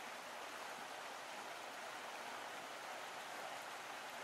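Faint, steady hiss with no distinct events.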